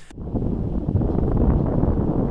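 Wind blowing across a camera's microphone: a steady, low, rough rush of wind noise.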